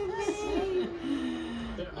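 A young child's long, drawn-out whiny vocal sound, slowly falling in pitch.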